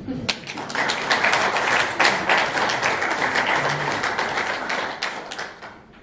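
Audience applauding, a dense run of hand claps that dies away in the last second.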